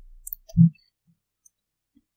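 Mouth clicks and one short, low voiced "mm" from a woman close to the microphone, about half a second in.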